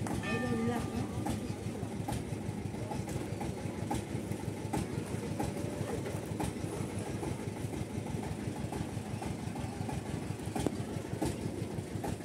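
A vehicle engine running steadily with a low rumble.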